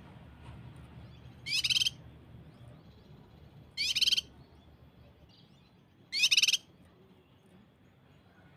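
Cucak kinoi (leafbird) song: three short, loud, high-pitched bursts of rapid-fire notes, the 'tembakan' shots, about two and a half seconds apart.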